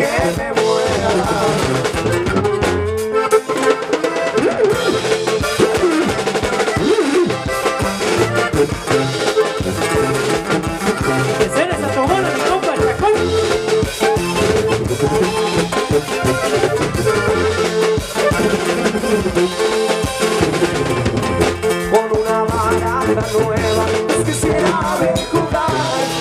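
Live regional Mexican band playing an instrumental passage: drum kit keeping a steady beat under bass and acoustic guitar, with a lead melody line on top.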